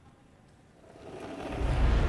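Faint arena ambience, then a rising whoosh with a deep rumble that swells up about a second in and stays loud: a TV network logo transition sting.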